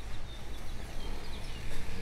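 Outdoor street ambience: a steady low rumble with a few faint, short, falling bird chirps in the first second or so.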